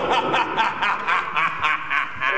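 A man's rapid staccato laugh, an even run of short 'ha's at about five or six a second: a villain's cackle from a stage actor.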